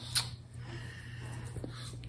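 A single quick kiss, a short lip smack, followed by quiet room tone with a low steady hum.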